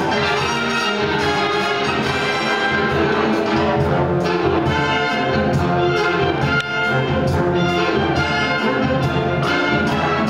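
Live orchestral music led by a full brass section of trumpets, trombones and tubas playing sustained chords.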